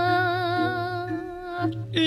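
A solo voice chanting a Balinese geguritan verse in the Sinom metre holds a long, wavering note that fades away about a second in, over a steady low hum.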